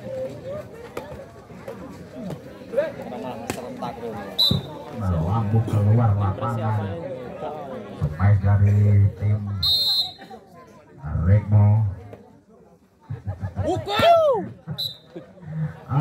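Overlapping voices of players and spectators calling out and chattering, loud and indistinct. Three short high-pitched tones come through, spread across the stretch.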